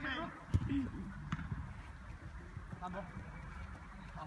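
Outdoor futsal game: players shouting to each other, with two sharp knocks of the ball being kicked about half a second and just over a second in.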